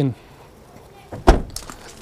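A VW Taigo's tailgate being pulled down and shut: one heavy thud about a second and a quarter in, with a few lighter clicks around it.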